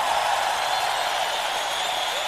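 Steady hiss with no music or voice: a break in the recording between passages of the worship song.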